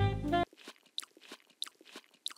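Guitar music cuts off about half a second in, then close crunching and chewing of a toasted sesame bagel with cream cheese, with sharp crunches about three a second.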